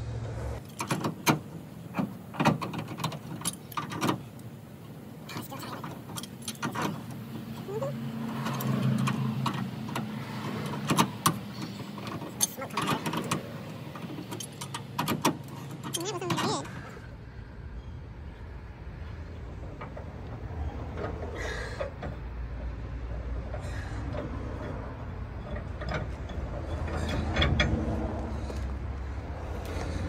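Metal clinks and clanks, short and irregular, as a pipe wrench and the loosened nut are worked off a trailer hitch ball. About halfway through the clinks thin out and a steady low rumble takes over.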